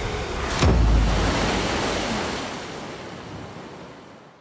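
A person plunging into a lake from height: a sudden heavy splash with a deep thud about two-thirds of a second in, then rushing spray and water that slowly fades away.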